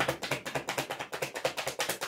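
A deck of tarot cards being shuffled in the hands, the cards slapping against each other in a rapid, even run of clicks, about a dozen a second.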